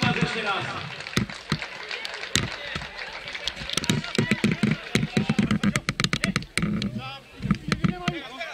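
People's voices talking and calling out, with a dense run of short, sharp knocks through the middle.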